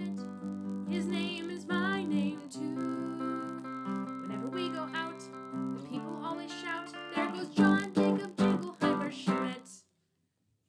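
Squier electric guitar strummed clean through a small amp, ringing chords under a woman's voice singing along, then a run of hard strums near the end that stops suddenly.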